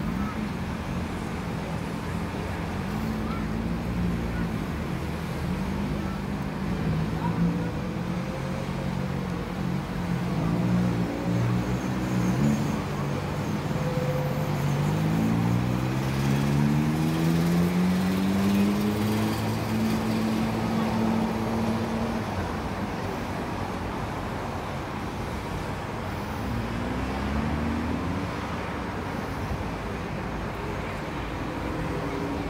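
Road traffic with vehicle engines running close by. About midway one engine rises in pitch as it accelerates and then holds a steady note for a few seconds, and another brief rise comes near the end.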